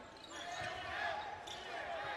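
A basketball dribbled on a hardwood court, faint against the quiet hum of the arena.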